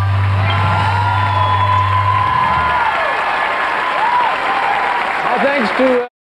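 Studio audience applauding and whistling, with long whistles that hold and then fall in pitch, while a held low note from the band dies away a little over two seconds in; a voice is heard near the end.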